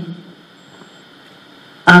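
A man's speech breaks off just after the start, leaving a pause of about a second and a half with only faint steady background hiss. His voice resumes near the end.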